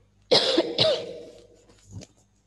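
A woman coughing twice in quick succession, loudly, about half a second apart.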